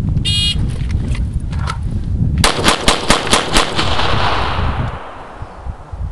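An electronic shot timer's start beep, then about two seconds later six rapid handgun shots within about a second, echoing across the range. Wind rumbles on the microphone.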